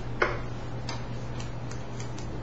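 Chalk striking a blackboard while writing: one sharp tap a little after the start, then a few lighter irregular ticks, over a steady low hum.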